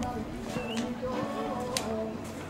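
Indistinct voices in the background, with a sharp click near the end.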